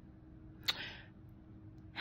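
A single sharp click about two-thirds of a second in, followed by a short hiss, over quiet room tone.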